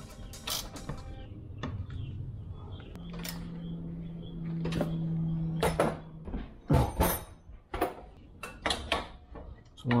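Torsion springs being wound by hand with steel winding bars: a dozen or so sharp, irregularly spaced metal knocks and clinks as the bars are worked in the winding cone. A low steady tone runs for about three seconds midway.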